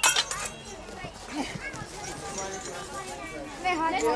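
Steel swords clashing with a metallic ring at the start, followed by the murmur of onlookers' voices.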